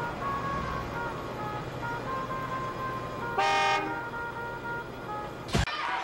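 A single short horn toot about three and a half seconds in, over a steady low hum and faint high notes. A sharp click comes near the end as the sound cuts.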